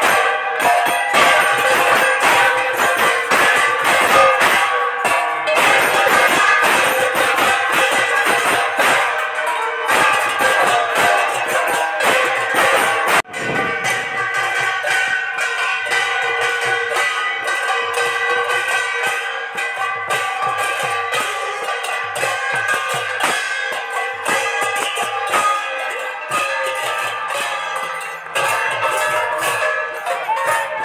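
Devotional music of large brass hand cymbals struck in a fast, steady rhythm with drum strokes, the cymbals' ringing filling the sound, with one abrupt break about a third of the way in.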